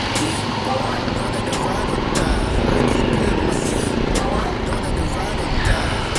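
Yamaha Sniper 150 underbone motorcycle's engine running while riding in traffic, with wind rushing over the camera microphone.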